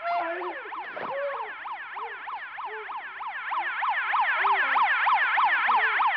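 A siren-like alarm wail that warbles rapidly, about four to five sweeps a second, in several overlapping layers, growing louder over the second half.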